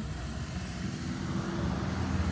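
Road traffic: a motor vehicle's engine and tyres making a steady low rumble that grows slightly louder toward the end.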